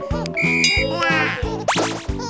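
Bouncy children's background music with a steady beat, overlaid with cartoon sound effects: a short high whistle-like tone about half a second in and a quick rising swoosh near the end.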